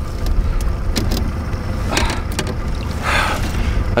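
A boat's engine idles out of gear with a steady low rumble. Water splashes and there are a few sharp knocks as a large king salmon is handled at the side of the boat.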